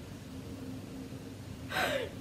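Faint steady hum of room tone, then near the end a girl's sharp laughing gasp, a short breathy burst with a falling pitch.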